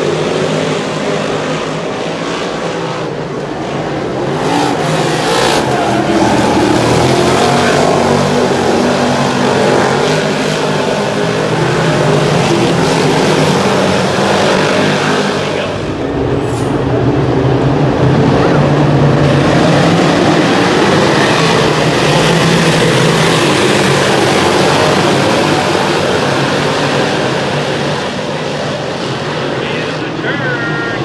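A field of 358 Modified dirt-track race cars running at speed, their 358-cubic-inch V8 engines loud and continuous. The sound swells as the pack comes past, dips briefly about midway, then swells again.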